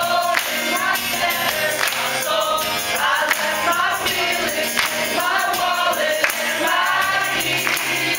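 A large group of teenage voices singing a song together, accompanied by strummed acoustic guitars.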